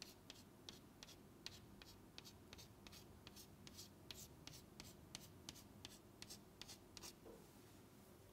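Chalk on a chalkboard, faint: quick short hatching strokes, about four a second, that stop about seven seconds in.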